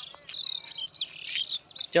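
Small birds chirping and twittering, many short high calls overlapping, some sliding up or down in pitch.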